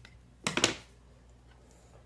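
Scissors snipping through a length of ribbon once, a short sharp cut about half a second in.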